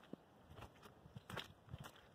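Faint footsteps on wet, muddy ground: a few soft, short steps, otherwise near silence.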